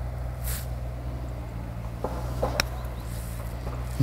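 A single sharp click of a putter striking a golf ball, a little past halfway, over a steady low background hum.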